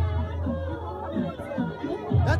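Crowd of people chattering and calling out over music playing for dancing.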